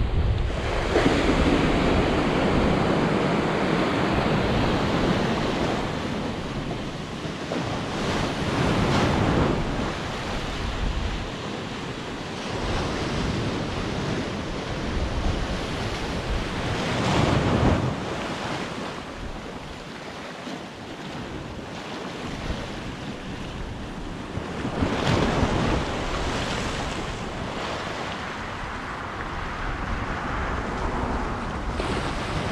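Sea surf breaking and washing over the rocks at the foot of a seawall, swelling in several loud surges several seconds apart, with wind buffeting the microphone.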